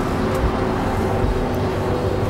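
Ice rink arena ambience: a steady low rumble with faint music over the public-address system holding sustained notes.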